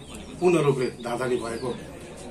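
A man speaking, with a bird calling in the background.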